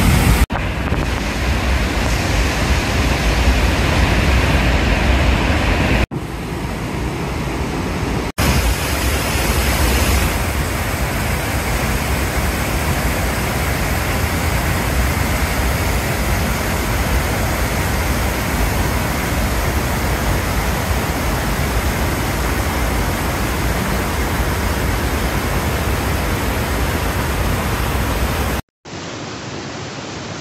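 Waterfall in full spring snowmelt flood: a loud, steady rush of falling water, broken by a few brief cuts. Near the end it drops out, and a quieter rush of the swollen river follows.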